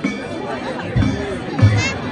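Danjiri festival drum (taiko) beating a steady rhythm, two heavy strikes about two-thirds of a second apart in the second half, over the chatter of a dense crowd.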